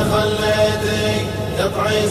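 Background music: an Arabic sung poem chanted by voices, holding long notes between sung lines.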